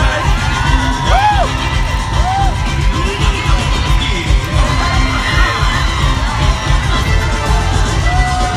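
Loud parade music with a heavy bass beat, with a crowd of spectators cheering and shouting over it; a few short rising-and-falling whoops stand out about one and two seconds in.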